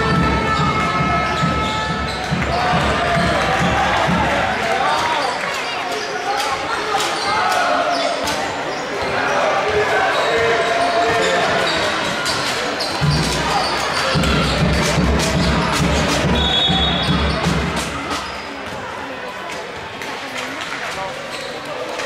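Basketball being dribbled and bounced on a hardwood gym floor, with sharp court noises and the chatter of spectators echoing in the hall. Near the end a referee's whistle sounds briefly, stopping play.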